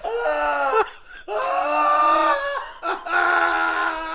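A man's hysterical laughter: three long, high-pitched held cries with short breaks between them.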